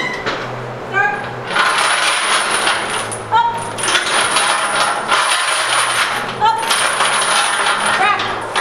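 Heavy steel chains hung from a loaded barbell jangling and clinking as the bar moves through a squat. There are several long stretches of rattling, with a few short bright metallic rings between them.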